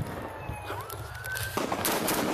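Police siren rising in pitch and then holding, cut off abruptly about a second and a half in, with sharp gunshot bangs at the start and near the end.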